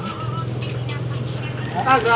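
A steady low engine hum from a vehicle running nearby, holding one pitch for about a second and a half before a voice comes in.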